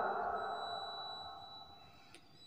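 Echo of a man's chanted Quran recitation dying away after the last note of a verse, fading steadily almost to silence.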